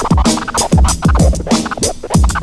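Turntable scratching on a Technics deck: a record is pushed back and forth by hand while the mixer's crossfader chops it. The sample sweeps quickly up and down in pitch, cut into many short stabs a second.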